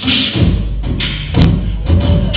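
Live human beatboxing through a PA: deep kick-drum thumps over a low bass hum that the performer starts about half a second in.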